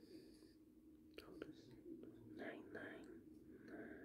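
Near silence, with faint whispered muttering under the breath and two light clicks a little over a second in.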